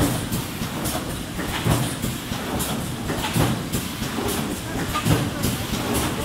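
Automatic plastic-cup thermoforming machine running in steady cycles, a heavier stroke about every 1.7 seconds with quicker mechanical clicks between, in line with its 30–35 forming cycles a minute.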